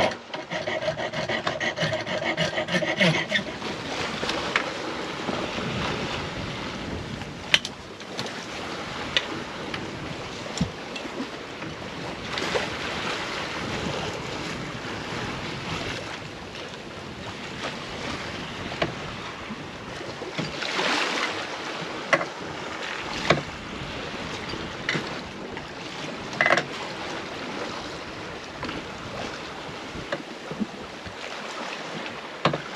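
Steady rush of wind and water around an Alberg 30 sailboat under way at sea, broken by scattered sharp knocks and clicks of hardware being handled at the stern wind-vane gear. A pitched buzzing is heard for the first three seconds.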